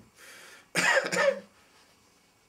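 A person coughs twice in quick succession about a second in, after a short breath.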